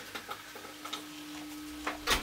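Light clicks and taps of a steel ruler being handled on a pallet-wood board on a wooden workbench, with a sharper tap near the end, over a faint steady hum.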